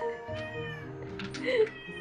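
A cat meows once, a short rising-and-falling call about one and a half seconds in, over background music with steady held notes.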